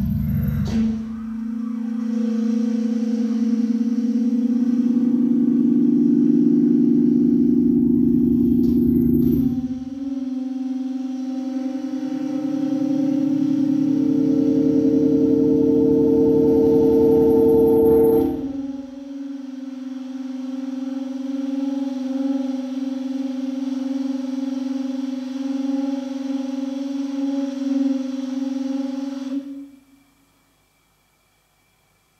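Tenor saxophone holding a long low note, shaped in real time by live electronics. A lower, pulsing electronic drone joins twice and drops away, leaving the single held tone until it cuts off suddenly near the end.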